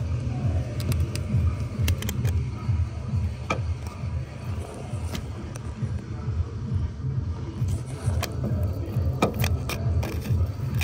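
A handheld heating tool runs with a steady low rumble, warming a seized crankshaft sensor's broken plastic casing in the engine block so it softens for removal. Scattered light clicks of tools or metal sound over it.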